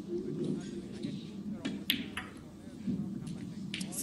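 Snooker balls clicking, with a few sharp knocks of cue and balls about two seconds in, over a low murmur of voices.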